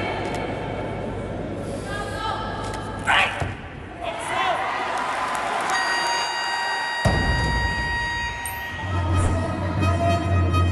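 Competition-hall ambience with voices and a short loud shout, then music comes in. About seven seconds in there is a heavy thud: the loaded barbell dropped from overhead onto the lifting platform after the lift.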